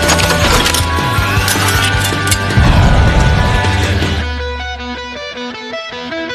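Background music: a loud, busy track with drum hits that drops about four seconds in to a sparse run of short repeated notes.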